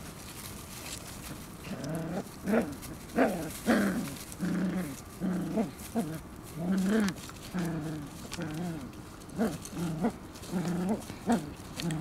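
Shiba Inu puppies vocalizing in play as they tug at a cloth: a string of short calls that bend up and down in pitch, starting about two seconds in and coming one or two a second.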